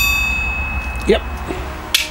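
A small steel target plate hit by a bottle cap fired from a bottle-cap gun, ringing with one clear high tone that fades over about a second and a half. Near the end comes a second sharp snap as the gun fires again.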